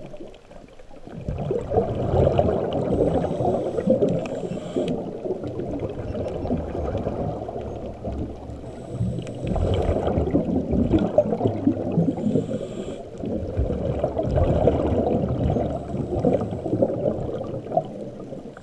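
Muffled underwater rushing and gurgling, heard through a waterproof camera housing. It swells and eases in slow waves, with a fine crackle in it.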